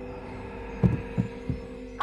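Horror-trailer sound design: a steady low drone with three dull thumps about a second in, coming a little closer together, the first the loudest.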